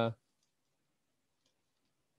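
The end of a man's drawn-out hesitant "uh", then near silence with a few faint clicks.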